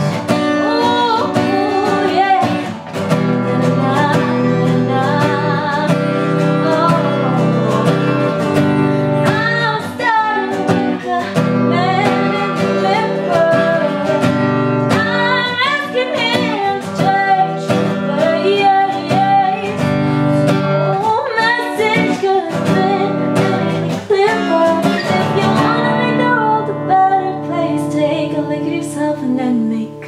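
A woman singing a melody over her own strummed acoustic guitar.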